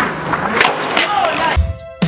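Skateboard on concrete, with short knocks from the board and voices in the background; about one and a half seconds in, this cuts off and electronic music with a heavy bass beat and a held tone starts.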